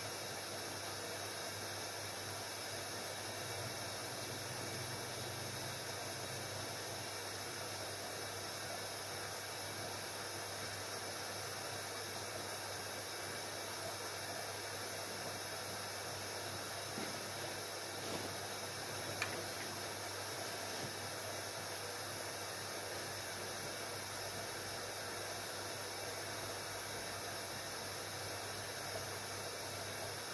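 Haier 7.5 kg front-loading washing machine running a wool cycle: a steady low hum under a constant hiss, with one faint click about 19 seconds in.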